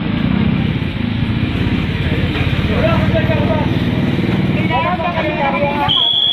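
A motor vehicle's engine running close by with a fast, even pulse, under the chatter of a crowd. A short high steady tone sounds near the end.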